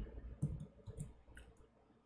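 A few faint, irregular clicks from a computer mouse as a web page is scrolled.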